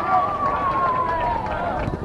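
A single long drawn-out shout, held for nearly two seconds and falling slowly in pitch, over open-air pitch noise, with a short knock near the end.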